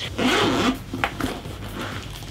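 Zipper of a zippered hard-shell carry case being pulled open in one quick stroke, followed by a single click as the case is opened.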